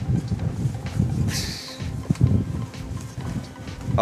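Strong gusty wind buffeting the microphone in irregular low rumbles, with a brief hiss about a second and a half in.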